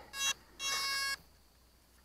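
Electronic speed controller power-up beeps sounded through the RC glider's brushless motor just after the 2-cell LiPo is plugged in: a short steady tone, then a longer one of about half a second.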